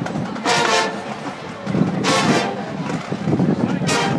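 Marching band playing, its brass section sounding loud, short chords about every one and a half seconds, with lower instruments carrying on between them.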